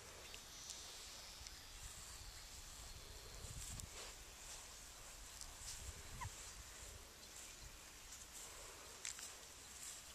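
Near-quiet outdoor ambience: a low rumble underneath, with a few brief, faint high squeaks and light clicks.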